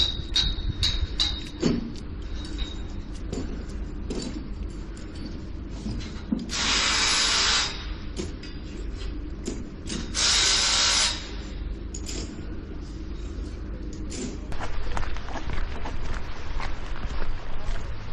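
Building-site work: scattered knocks and clatter from workmen, with two loud steady bursts from a power tool, each a second or two long, about six and a half and ten seconds in, over a low rumble.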